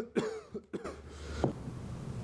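A person's low, breathy chuckle in a few short bursts, the last and sharpest about a second and a half in.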